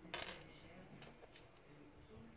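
A brief clatter of small metal laptop screws dropped onto a plastic laptop bottom cover just after the start, followed by a couple of faint ticks.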